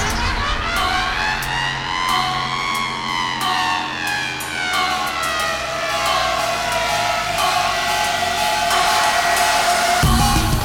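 Breakdown of an electronic bass-music track: the low end drops away and a siren-like synth sweep rises and falls in pitch over a few seconds, over a steady held tone.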